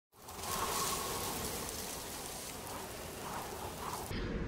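A steady rain-like hiss, fading in over the first half second, used as the sound effect of an animated logo intro.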